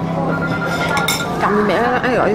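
A few light clinks of tableware about a second in, over voices.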